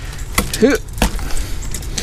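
A few sharp cracks and knocks as a sheet of ice is broken and pried loose from a camper's step by hand, with a short grunt about halfway through.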